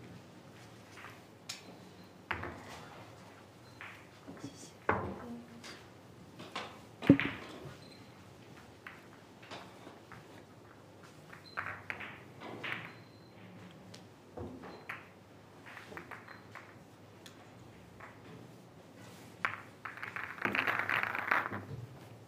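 Billiard balls clicking against each other now and then as the referee gathers and racks them in the triangle for the next frame, with one sharp clack about seven seconds in. A longer rattle of balls near the end.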